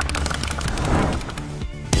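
A rapid drum roll: dense, evenly packed strokes that swell to a peak about a second in, then thin out near the end.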